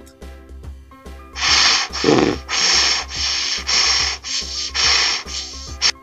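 Cartoon sound effect of a saw cutting into a tree trunk: a run of rasping strokes, about two a second, starting about a second and a half in, over background orchestral music.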